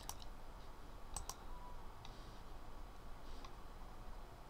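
Faint computer mouse clicks: one click at the start, then two quick clicks a little over a second in.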